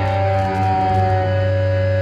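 Noise-punk band demo: distorted guitars and bass holding a loud, droning sustained chord.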